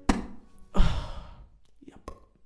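A man breathes out in a loud sigh about a second in, fading over half a second. A short click comes just before it, near the start.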